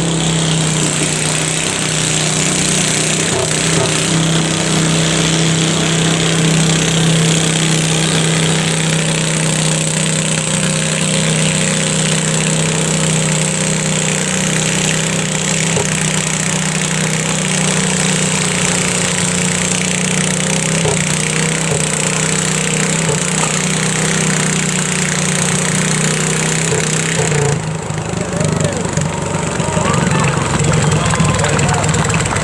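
Small garden pulling tractor's engine running steadily under load as it drags a weight-transfer pulling sled. Its note drops off near the end.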